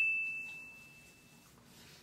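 A single bell-like ding, a clear high tone struck sharply and fading out over about a second and a half. It is an edited-in sound effect marking the product shot.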